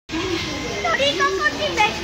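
A woman talking and laughing over a low, steady rattling rumble from a Carlator car riding up its roller-conveyor track.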